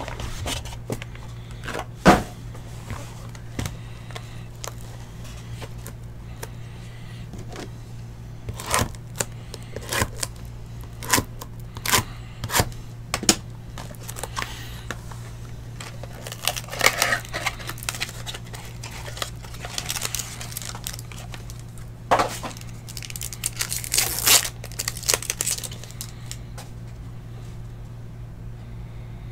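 Trading-card packaging being handled and opened: scattered clicks and taps of cardboard boxes and packs, with bursts of plastic wrapper crinkling and tearing, busiest in the middle and near the end. A steady low hum runs underneath.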